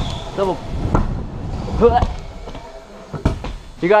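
Scooter wheels rolling over a skatelite-sheeted wooden pump track, the rolling noise fading as the rider slows, with one sharp clack a little after three seconds in. A man's voice calls out over it.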